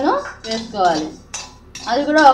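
A spatula stirring and scraping dry horse gram seeds around a pan as they roast, with sharp clinks of the spatula against the pan.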